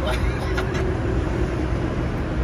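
Massage motors in a BMW car seat running: a low steady rumbling hum, the car's engine off.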